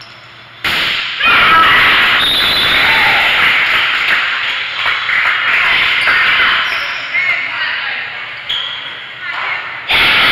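Many voices of players and spectators shouting and cheering during a volleyball rally in a gym hall. The noise starts suddenly about a second in and goes on loudly, with several voices overlapping.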